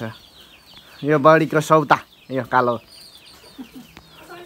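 Chickens clucking in two short spells, about a second in and again past the middle, with high, quick falling chirps throughout.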